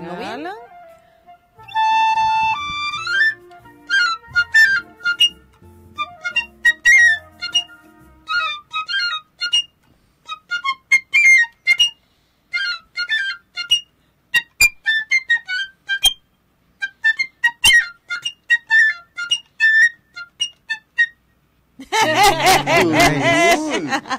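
Piccolo played solo. A held note about two seconds in climbs in a quick upward scale, then comes a fast run of short, very high notes, stopping about a second before the end.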